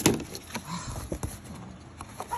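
Handling of a paper art print and its packaging on a table: a sharp tap right at the start, then soft paper-and-plastic rustling with a few light taps.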